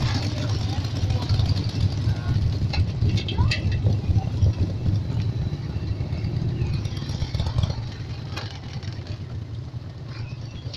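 Motorcycle engine running steadily with a low hum, heard from the pillion seat, with faint voices now and then.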